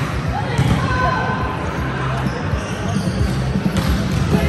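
Volleyballs struck and bouncing on the floor of a large, echoing gym, with two sharp hits, one about half a second in and one near the end, over players' voices.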